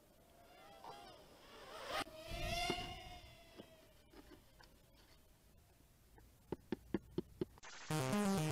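Brushed motors of a micro FPV quadcopter whining in flight, faint, the pitch rising and falling with the throttle, loudest two to three seconds in. Near the end comes a quick run of about six sharp clicks, then music starts.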